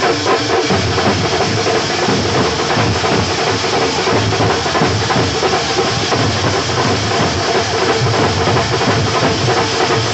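A festival drum troupe beating stick-struck drums together in a loud, dense, continuous rhythm with no pause.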